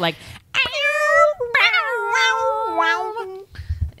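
A woman's voice vocally imitating a wailing electric-guitar riff: long sung notes that bend and then step down in pitch over about three seconds.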